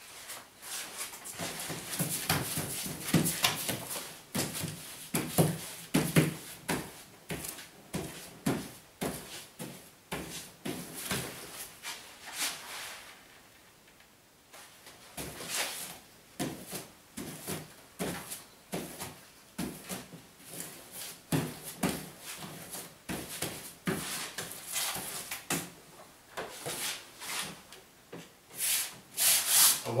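Block pasting brush spreading paste over a length of wallpaper on a wooden pasting table: repeated short brushing strokes and rubs, with a brief quieter pause about halfway through.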